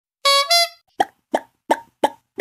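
Cartoon sound effects: a bright two-note chime rising in pitch, then three quick plops about a third of a second apart.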